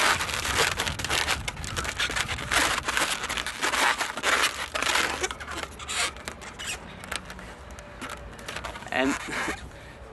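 Inflated latex modelling balloons rubbing against each other and against hands as a balloon ball's edges are pulled out to round it, in a quick run of noisy strokes for the first five or six seconds, then quieter.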